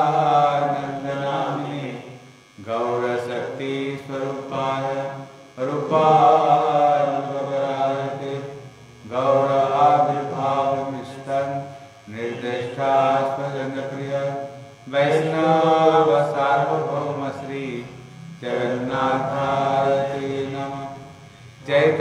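A man chanting Sanskrit devotional prayers in slow, drawn-out melodic phrases, seven of them with short breaths between.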